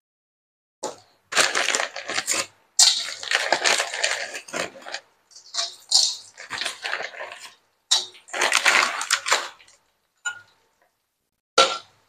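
Raw kerupuk crackers dropped into hot oil in a wok, crackling and sizzling in uneven bursts as they puff up. The bursts stop before the end, and two short clicks follow.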